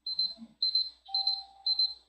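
Electronic timer alarm beeping in four quick bursts of rapid high pips, about two bursts a second. It signals that a five-minute timed interval is up.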